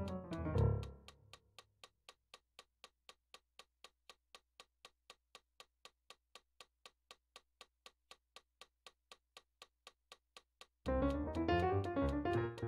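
Digital piano playing dense atonal chords that break off about a second in and ring away, leaving only a metronome clicking steadily, about three to four clicks a second. Loud, clustered chords come back in near the end.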